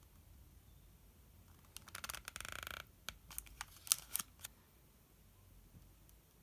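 Handling of a compact plastic camera speedlight. About two seconds in there is a short run of rapid ratcheting clicks as its head is swivelled through its click-stops. Several sharp plastic clicks follow as a snap-on diffuser cap is pushed onto the flash head.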